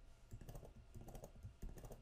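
Faint, irregular clicking of keys on a computer keyboard.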